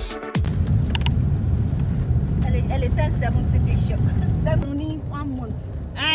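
Electronic dance music with a deep kick drum cuts off in the first half second, giving way to the steady low rumble of a car moving, heard from inside the cabin. Women's voices come in over the rumble from about halfway through.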